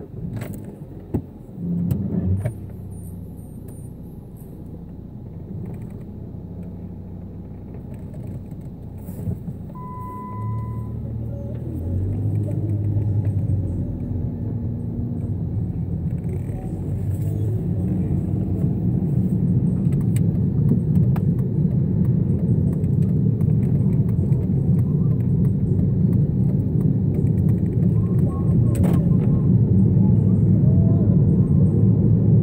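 Car driving, heard from inside the cabin: a steady low engine and road rumble that grows louder as the car picks up speed. A short single beep sounds about ten seconds in.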